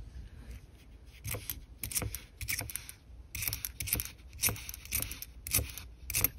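Loose pennies clicking and clinking against each other as they are pushed around and sorted by hand on a mat: a string of short, sharp clicks, coming thick and fast from about a second in.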